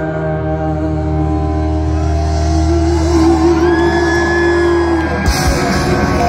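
Rock band playing live, heard from within the crowd: a long held note with a slight waver over a sustained chord, then about five seconds in cymbals crash and drums hit as the band comes back in.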